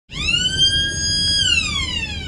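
Electronic alert tone from a Mobile Plate Hunter 900 license plate reader in a police cruiser. A single tone swoops up, holds steady for about a second, then glides down near the end. It signals a hot-list plate match, announced just after as a stolen vehicle.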